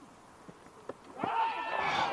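A faint click a little under a second in, then a long shouted appeal from the cricket fielders starting just past halfway, as the wicketkeeper attempts a stumping.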